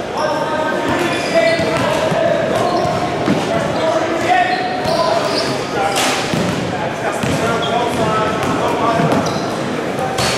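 Basketball drill in a large echoing gym: a basketball bouncing on the hardwood floor and sneakers squeaking, under indistinct voices. About six seconds in there is a louder impact at the rim as a player dunks.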